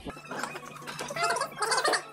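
Plastic knife cutting through a boiled potato on a foam plate, with faint voices in the background.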